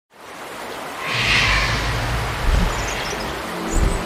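Intro sound effects: a swelling rush of noise like rushing water or a whoosh, loudest about a second in, with deep booms about two and a half seconds in and again near the end, leading into music.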